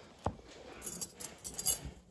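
Steel surgical instruments clicking and clinking as a needle holder is handled to tie off a suture: one sharp knock a quarter second in, then a quick run of light metallic clicks near the middle.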